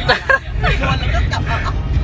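People talking inside a moving car, over the steady low rumble of road and engine noise in the cabin.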